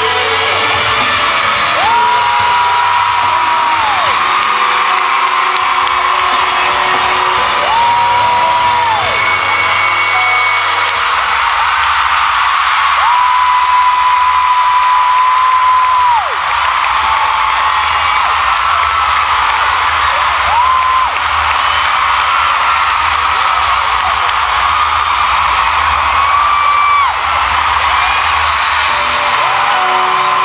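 Loud arena concert sound: music playing under a screaming, whooping crowd, with several high held screams that rise and fall, each one to three seconds long. A deeper bass comes in about a third of the way through.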